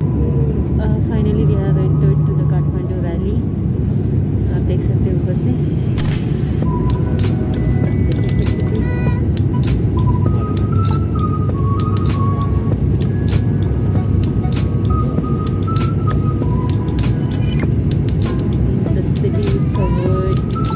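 Loud, steady cabin noise of a turboprop airliner in flight, the propeller engine running. A thin stepping tune and indistinct voices sit faintly over it.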